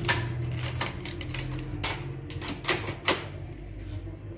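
Sharp metallic clicks, about six at irregular intervals, from a key being turned in a steel gate's multi-bolt mortise lock, the lock bolts clacking as they slide.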